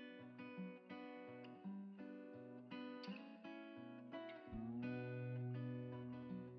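Background music: acoustic guitar playing a run of plucked chords in an even rhythm. About four and a half seconds in, a low note comes in and is held under the chords.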